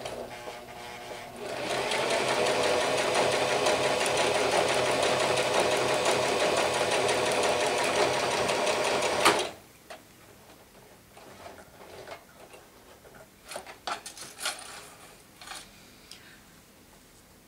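Domestic electric sewing machine running steadily, stitching through blanket binding to finish a seam line, then stopping suddenly about nine seconds in. A few light clicks and rustles follow as the fabric is handled.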